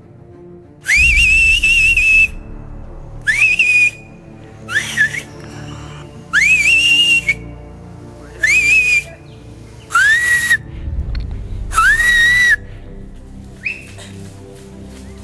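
A man whistling loudly with his hand to his mouth, a signal call, in a series of about seven or eight blasts. Each blast swoops up and then holds, some short and some about a second long, over quiet background music.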